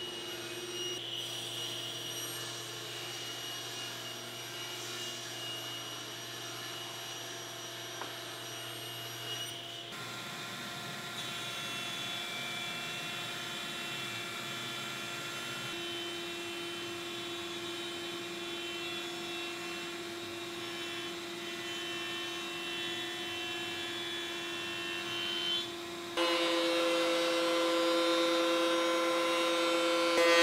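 Woodworking machines running one after another: the steady motor hum and whine of a table saw ripping boards, then a jointer, then a louder thickness planer near the end. The tone shifts suddenly at each change of machine.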